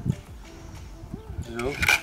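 Break-barrel air rifle being loaded by hand, its barrel snapped shut with one sharp click near the end.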